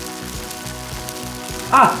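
Tofu slices sizzling steadily as they fry in a lightly oiled pan, under sustained background music.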